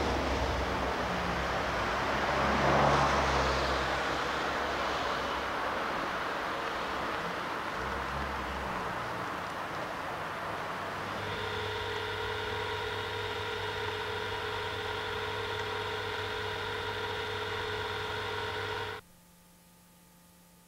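Street traffic noise with a car going past, swelling to a peak about three seconds in. From about eleven seconds a steady droning hum with several held tones takes over, then cuts off abruptly near the end.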